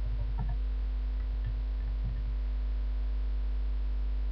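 Steady low electrical hum, mains hum picked up through a webcam microphone, with a few faint low bumps in the first half.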